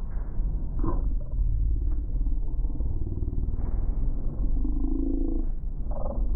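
A woman's voice speaking, muffled and dull, as if all the upper range were cut away, over a heavy steady low rumble.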